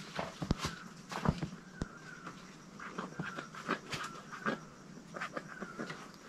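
Faint rustling and scattered small clicks of hands handling a newborn calf and a nearly empty medicine bottle as its navel is treated, with faint high chirps in the background.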